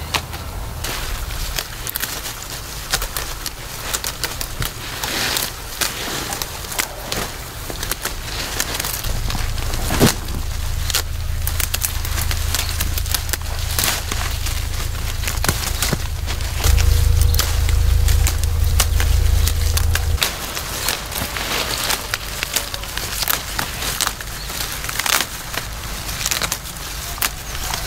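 Tea shoots and leaves being snapped off the bushes by hand: a run of quick crisp snaps and leaf rustles, one sharp snap standing out about ten seconds in. Underneath, a low rumble swells through the middle and is loudest for a few seconds about two-thirds of the way through, with a faint steady hum, then drops back.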